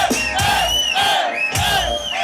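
Live dancehall show in a club: music with a heavy bass line, a voice over it calling out short rising-and-falling cries about twice a second, and the crowd.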